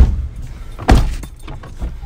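Two heavy thumps about a second apart, each followed by a brief low rumble.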